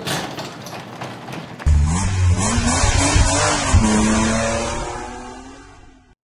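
Intro sound effect: a rushing hiss, then about a second and a half in a car engine starts with a deep rumble and revs, its pitch rising and then holding, mixed with music, before fading out near the end.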